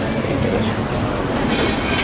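Steady low rumble of a moving vehicle, with a brief high squeal about one and a half seconds in.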